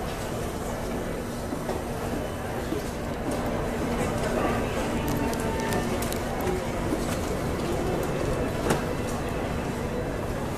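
Indistinct background chatter of other people over a steady low hum.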